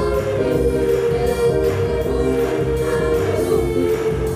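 A group of girls singing together into microphones over amplified pop music with a steady beat.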